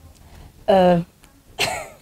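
A woman's burst of laughter: a short voiced cry, then a rough, cough-like burst of breath near the end.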